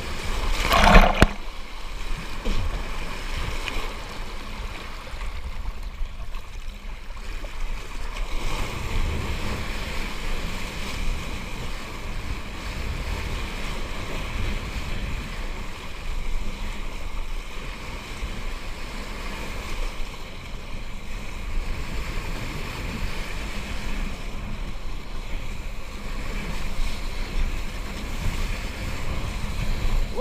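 Wind buffeting the microphone and water rushing under a kiteboard while riding. It is a steady rough rush with a heavy low rumble, and a loud burst about a second in.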